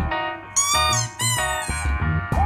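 Rubber squeaky dog toy squeezed twice, giving two short honking squeaks about half a second each, over background music.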